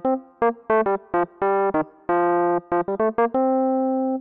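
Logic Pro's Classic Electric Piano software instrument played from a MIDI keyboard: a quick string of chords and single notes, some clipped short and some held, ending on a held note.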